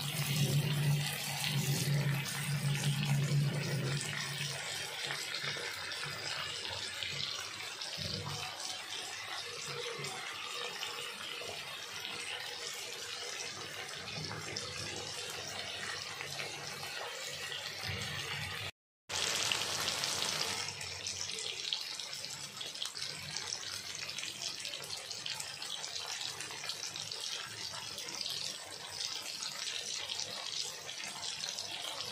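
Chicken, tomato and onion sizzling in oil in a wok: a steady frying hiss, with a low hum under it for the first few seconds. About two-thirds of the way in the sound drops out for a moment, then the sizzle comes back brighter.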